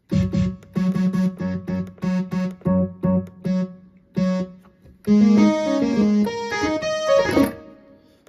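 Yamaha CK61 stage keyboard auditioning lead synth presets: about ten short, evenly repeated notes on the 'Impact' voice, then, after a brief pause, a quicker phrase of several notes on the 'Analog Lead 2' voice that stops about seven and a half seconds in.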